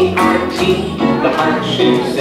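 A children's valentine song playing, with a sung melody over instrumental backing. Young children sing along.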